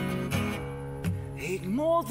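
Acoustic guitar strummed in a slow blues rhythm. Near the end a man's voice comes in, sliding up into a sung note.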